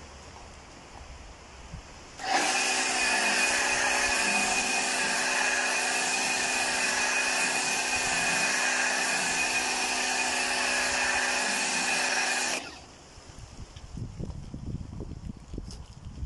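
Pressure washer running through a snow foam lance: a steady motor hum under the hiss of foam spraying. It starts abruptly about two seconds in and cuts off about ten seconds later.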